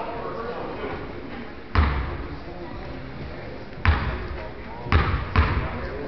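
Basketball bounced on a hardwood gym floor four times at uneven intervals, the last two about half a second apart, over background crowd chatter.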